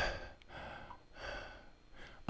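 A man breathing hard, out of breath after going upstairs: about three heavy breaths, the first the loudest.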